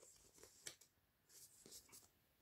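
Near silence, with a few faint paper rustles as a paperback picture-book page is handled and turned.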